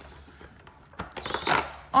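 A small cardboard advent-calendar door being pressed in and pulled open: a click about a second in, then a short rustle of cardboard tearing loose.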